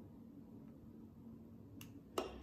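Near silence with a faint low hum, then one sharp click near the end: the trigger of a utility lighter being pressed at a candle wick.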